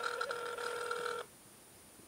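Telephone ringback tone heard through a smartphone's speakerphone as the call is put through after a menu choice: one steady tone that cuts off about a second in.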